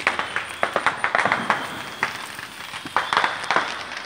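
Fireworks crackling in rapid, irregular sharp pops, bunched in flurries about a second in and again around three seconds in.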